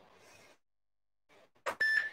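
Silence, then near the end a short click and a brief high electronic beep from an interval workout timer, counting down the last seconds of a work period.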